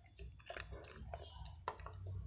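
Close-miked chewing of edible clay (eko calaba with pink clay paste): moist mouth sounds with scattered small clicks, one sharper click near the end.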